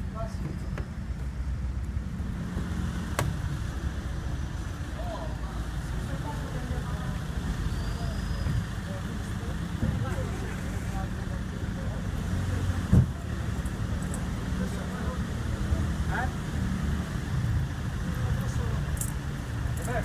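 Street noise dominated by a steady low rumble of a nearby car engine and traffic, with faint voices in the background. A single thump comes about thirteen seconds in.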